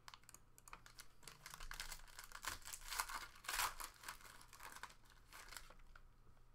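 Foil wrapper of a trading-card pack crinkling and tearing as it is opened, a run of quick crackles that is loudest about three to four seconds in and then dies away.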